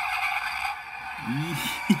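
Car engine sound effect played through the tiny speaker of a capsule-toy engine-start button, thin and tinny with no low end, running steadily. A man laughs over it near the end.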